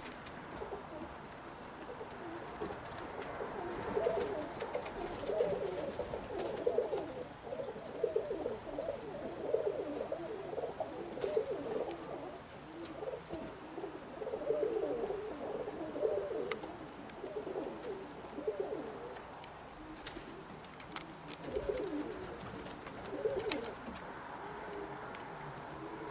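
Domestic pigeons cooing: low, bubbling coos in repeated bouts that come and go with short pauses.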